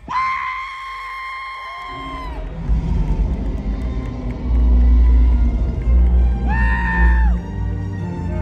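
Live arena show soundtrack over a loud PA: music with heavy bass that swells about halfway through, with a long, steady, high screech at the start and a second shorter one near the end.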